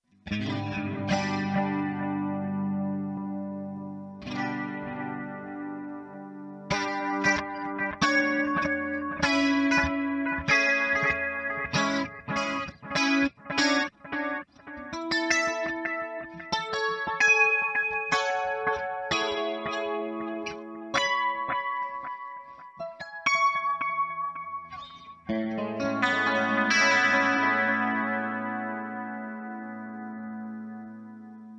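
Electric guitar played through the Hotone Ampero Mini's analog delay model (Analog Eko), its repeats trailing the notes. Chords ring at the start, then a run of picked single notes and arpeggios, and a final chord is left ringing out in the last few seconds.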